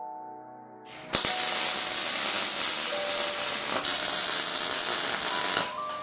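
MIG welder arc on the steel tube frame as the roll hoop is welded on: a steady crackling starts suddenly about a second in and cuts off just before the end. Background music plays underneath.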